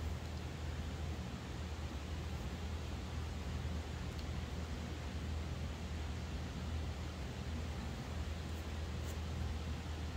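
Steady low hum and hiss of room noise, with a few faint ticks.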